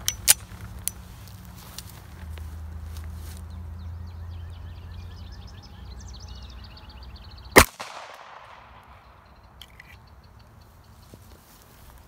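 A single pistol shot from a Kimber 1911 in .45 ACP, a sharp crack about two thirds of the way in that rings out and fades over a second or so.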